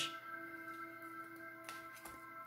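Soft ambient background music: a few held tones sounding steadily, with a faint click near the end.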